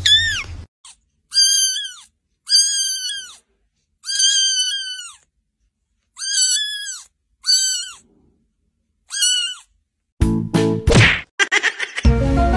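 A cat meowing in a series of about seven high-pitched calls, each under a second and rising then falling in pitch, with complete silence between them. Near the end come a few sharp knocks and a short, louder, denser stretch of sound.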